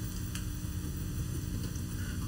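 Steady low hum and hiss with a single faint click about a third of a second in.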